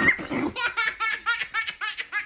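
A person laughing: after a breathy start, a steady run of short, high-pitched ha-ha pulses, about five a second.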